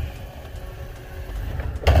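A Ram pickup's Hemi V8 runs with a low rumble as the truck pulls away under load, towing a car over. Near the end comes a sudden loud bang.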